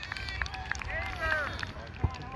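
Several short, distant shouts and calls from people on a soccer field, rising and falling in pitch, too far off to make out words.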